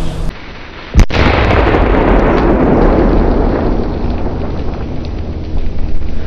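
A Tropic Exploder 4 firecracker (P1 class, 4.5 g net explosive mass) goes off with one sharp, very loud bang about a second in. A few seconds of noisy rumble follow.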